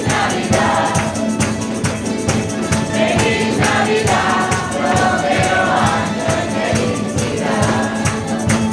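Folk ensemble of strummed guitars and other plucked string instruments with a mixed choir singing a Christmas carol (villancico), hand percussion keeping a steady beat.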